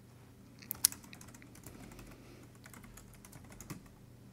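Typing on a computer keyboard: scattered light keystroke clicks, with a sharper pair of clicks about a second in.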